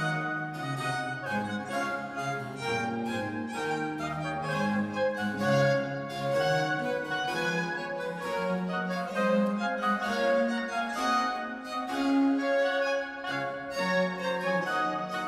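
French Baroque string ensemble on period instruments, violins with harpsichord continuo, playing an instrumental passage with no voices. The strings hold the notes while the harpsichord plucks chords beneath them.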